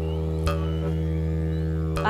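Background music: a steady low drone of several held tones, with a brief click about half a second in.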